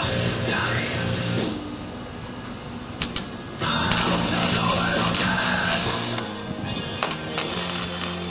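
Background rock music with guitar. It drops in level from about one and a half seconds in until just past three and a half, and a few sharp clicks come near three and seven seconds in.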